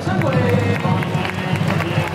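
Ballpark crowd noise mixed with voices and music from the stadium sound system as a player's cheer song winds down.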